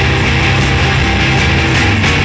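Garage-rock band playing a loud instrumental passage: distorted electric guitars, bass and drums, with cymbal hits about twice a second.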